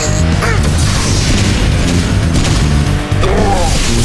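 Cartoon battle sound effects: an energy blast fired and striking with a crash, over loud action background music.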